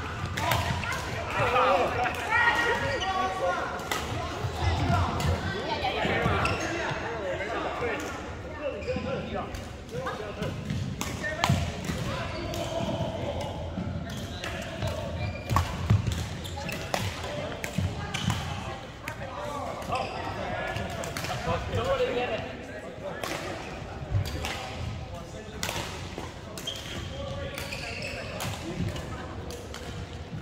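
Badminton doubles play: many sharp racket hits on the shuttlecock at irregular intervals, mixed with thuds of players' footwork on the court floor, and indistinct voices in the background.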